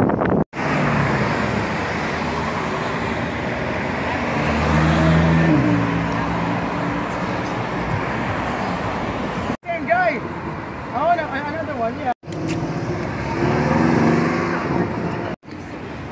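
City street traffic: car engines running and cars driving past, in several short spliced clips. About four to six seconds in, one engine climbs in pitch as a car accelerates.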